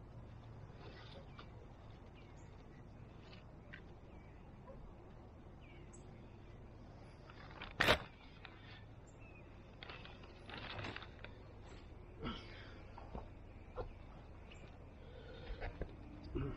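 Faint rustling and crinkling from a plastic bag of 10-10-10 granular fertilizer being handled and pellets scattered among the vines, with one sharp crackle about halfway through and a few lighter clicks later.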